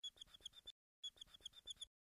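Fine-tip permanent marker squeaking across a glossy photo: two quick runs of faint, short, high squeaks, about eight in each, with the second run starting about a second in.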